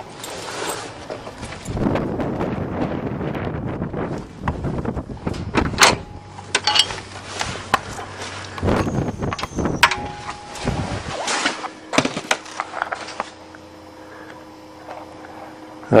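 A long T-handle key being worked in a steel door's lock: irregular metal scraping, rattling and sharp clicks, then the door being opened.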